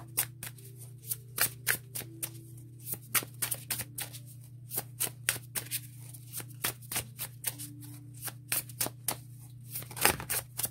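A Baroque Tarot deck being hand-shuffled: the cards tap and slide against each other in quick, irregular clicks, a few each second. A steady low hum runs underneath.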